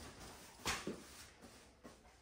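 A dog's paws stepping and scuffing onto a small trampoline's mat and frame: a few faint, short knocks and scuffs, the clearest about two-thirds of a second in, another just after, and a weaker one near the end.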